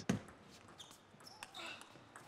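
Table tennis rally: a celluloid ball knocking back and forth off rackets and the table in faint, sharp clicks.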